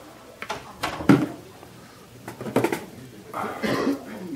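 Plastic containers and a bag being handled and set down on a metal table: a few knocks and rustles, the loudest about a second in.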